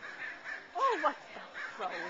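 A crow cawing, with two loud caws close together about a second in and fainter calls near the end.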